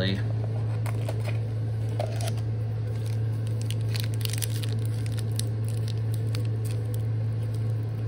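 Foil Pokémon booster pack wrapper crinkling and crackling in the hands as it is gripped to be torn open, in short clicks from about halfway through, over a steady low hum.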